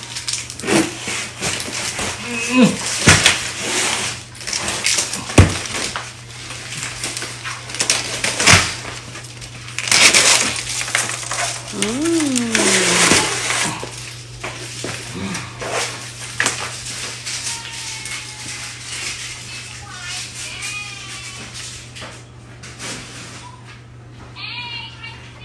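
A cardboard box of dried shrimp being opened and its packing handled: sharp knocks every few seconds and bursts of rustling about ten and twelve seconds in, over a steady low hum.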